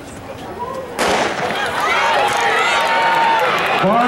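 A starting gun fires once about a second in, and the crowd immediately breaks into loud, sustained cheering and screaming from many voices as the 100 m sprint gets under way.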